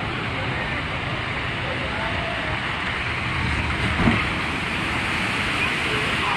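Steady rushing of water flowing through the channel of a wildwater boat ride, with faint voices in the background and a single thump about four seconds in.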